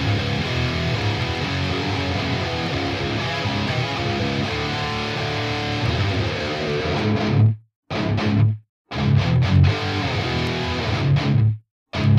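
Distorted electric guitar riff played back through blended cabinet impulse responses, with the overall loudness staying even while the IR levels are changed. The playing stops short three times in the second half.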